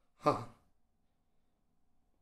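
A man says a single short "haan" (yes) in Hindi, then near silence.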